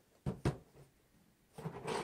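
Cardboard CPU-cooler boxes being handled: two quick soft knocks about a third and half a second in, then a softer rustle near the end.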